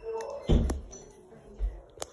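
Handling knocks against a phone held close to the microphone: a loud thump about half a second in and a second one just past the middle, with light rustling between.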